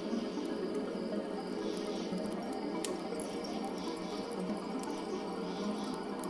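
Crackling fire with scattered sharp pops over a steady rushing bed, with crickets chirping.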